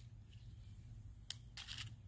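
Fingers pulling the dry split husk of a red buckeye pod away from the seed: a faint sharp click partway through, then a brief dry crackle.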